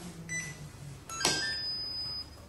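A click, then an electronic beep about a second long from the security system prototype's buzzer as its rear touch sensor is triggered.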